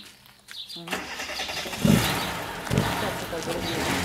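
A car engine starting about a second in and then running, with two heavy low surges about two and three seconds in.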